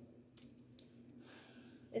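A few light metallic clicks in the first second from handheld dog nail clippers being opened and their sliding safety guard moved.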